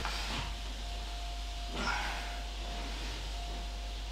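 A man's breathing from the effort of bodyweight floor triceps extensions: short sharp exhales, one at the start and one about two seconds in. A faint steady electrical hum runs underneath.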